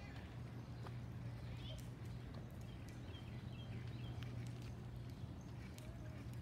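Quiet street ambience: a steady low hum with a few faint high chirps and scattered light footsteps.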